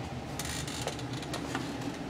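Faint, irregular light ticks and clicks over a low background hiss, like small handling noises.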